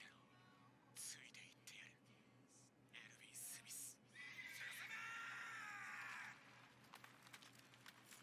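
Anime soundtrack playing quietly: a man's voice delivers a short line in two bursts, then a long wavering cry lasting about two seconds.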